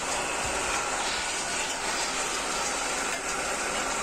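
Metal-spinning lathe running steadily while a hand-held spinning tool is pressed against the rotating stainless-steel blank, forming a milk pan; an even, unbroken machine noise with a hiss of metal rubbing on metal.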